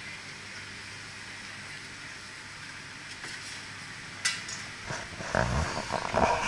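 Steady low background hiss, a single sharp click about four seconds in, then irregular rustling and knocking as the camera is moved near the end.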